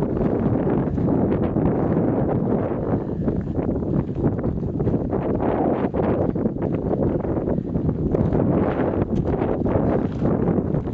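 Wind buffeting the microphone: a steady, low rumbling noise with gusts rising and falling.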